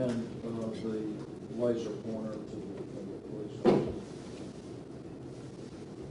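Low, indistinct voices for the first couple of seconds, then a single sharp knock, the loudest sound, a little before four seconds in.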